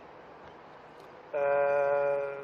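A man's voice holding a steady, flat 'ehh' hesitation sound for about a second, starting just over a second in, after a moment of faint background hiss.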